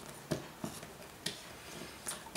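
Utility knife blade scoring around a disposable plastic tattoo tip, giving a few faint scraping clicks as the tube is rolled against the blade. The groove is being cut gradually deeper so the piece can be snapped off.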